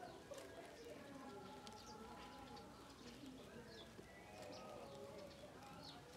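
Faint background of birds calling and chirping, with short high chirps scattered through.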